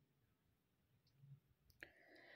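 Near silence: a pause in the narration, with one faint click near the end.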